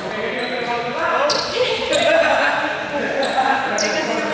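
Teenagers' voices and calls echoing in a large sports hall, with a ball bouncing on the gym floor a few times.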